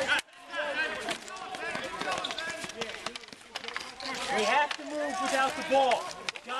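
Indistinct voices talking and calling out, with no words clear enough to make out, and a few faint sharp clicks.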